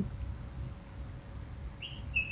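Pause in an outdoor garden with a low steady background rumble; near the end a bird starts a short chirping call.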